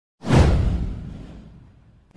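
A single whoosh sound effect over a deep low rumble. It hits sharply a fraction of a second in, falls in pitch, and fades away over about a second and a half.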